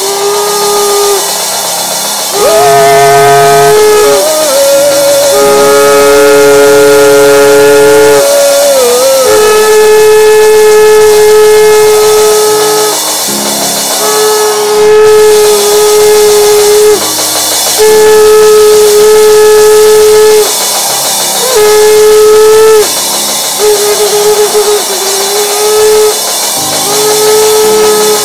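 A long twisted shofar blown in a series of loud, long blasts of several seconds each, mostly holding one note, with a few jumps up to a higher note and a wavering at the end of some blasts.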